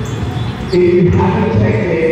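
Indistinct voices of several people talking.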